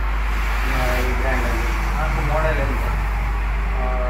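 A man speaking, over a steady low hum.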